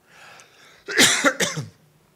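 A man coughing into a microphone: a faint breath, then a cough in two quick bursts about a second in.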